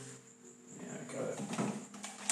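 A man's voice muttering quietly after a short pause, in a small room; no instrument is heard playing.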